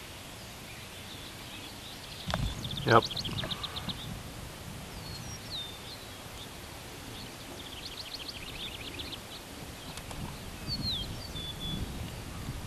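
Small birds singing over a steady outdoor background hiss: two rapid trills of quickly repeated high notes, each about a second long, and a few short down-slurred whistles.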